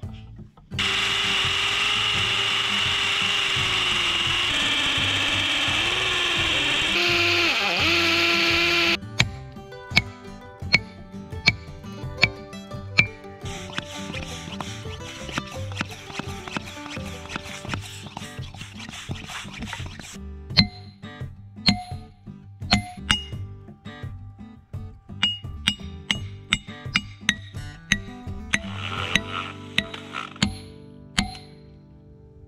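For about the first eight seconds, a loud steady machine noise with a wavering pitch, which cuts off suddenly. After that, background music with a steady beat.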